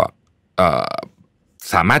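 A man's short wordless vocal sound of about half a second, set between pauses in his speech; talking picks up again near the end.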